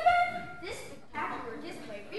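Speech only: a voice speaking on stage. It starts with a loud, briefly held vowel.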